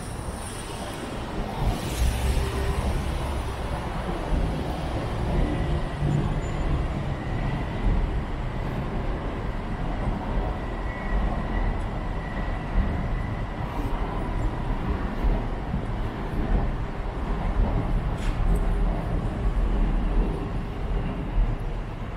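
Steady rumble of city street traffic, with a faint thin whine for several seconds in the middle.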